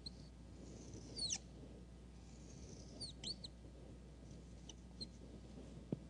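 Faint marker pen drawing on a whiteboard: soft rubbing strokes with sharp high squeaks, a pair about a second in, another pair around three seconds in, and a couple of shorter ones near the end.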